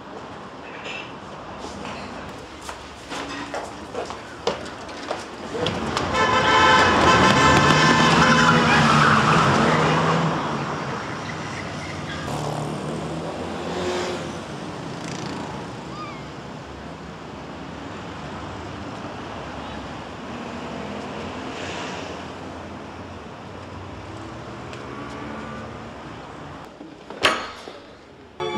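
Street traffic noise with a car horn sounding loudly for about four seconds, starting about six seconds in.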